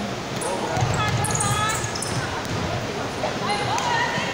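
Indoor basketball game: a basketball bouncing, sneakers squeaking on the court floor, and players' voices calling out.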